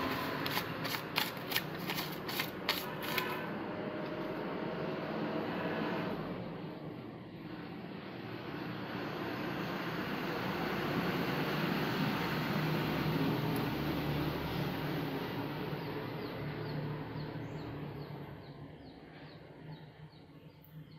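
The small folding knife blade of a paracord survival bracelet slicing through a sheet of paper: a quick run of crisp crackling cuts over the first three seconds or so. After that comes a steady background noise that swells and then slowly fades.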